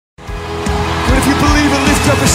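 Live concert intro: sustained instrumental music with a large crowd cheering and whooping over it, starting suddenly a fraction of a second in.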